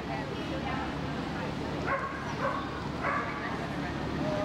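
A dog barking three times in quick succession about halfway through, over the background chatter of a large hall.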